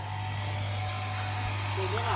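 Electric high-pressure washer running with a steady low hum while no water sprays. A short faint voice comes in near the end.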